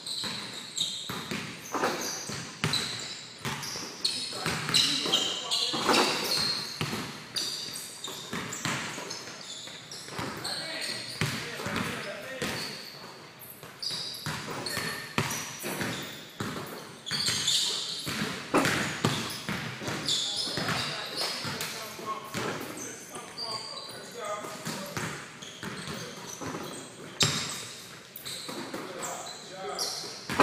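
Basketballs bouncing on a hardwood gym floor and hitting the rim and backboard, repeated short thuds echoing in a large gym.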